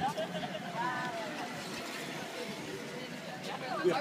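Indistinct voices of people talking nearby over a steady background of street noise, with a short "ja" spoken just before the end.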